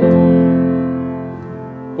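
Piano F major chord struck once and left to ring, fading slowly: the resolution of a C7 dominant seventh onto F, a perfect cadence with a settled sound.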